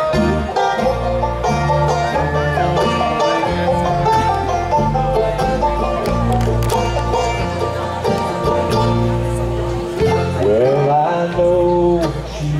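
Bluegrass band playing an instrumental break: banjo, mandolin and acoustic guitars picking quick runs, with no singing. A rising run of notes comes near the end.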